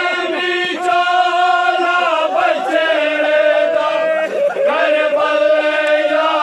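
A group of men chanting a noha, a Shia lament, in unison with long held notes.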